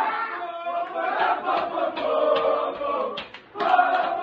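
A group of teenage boys chanting and singing together at full voice in a victory celebration, with hand claps; the voices drop briefly a little after three seconds in, then come back loud.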